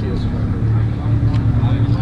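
A car engine running at idle: a steady low rumble that grows louder about half a second in, with indistinct voices behind it.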